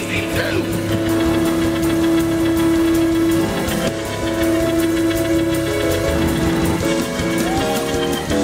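Live church praise music from a band: long held keyboard chords over drums, with the chord changing a few times.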